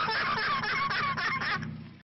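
Car tyres squealing in a smoky burnout, with the engine running underneath; the sound fades out near the end.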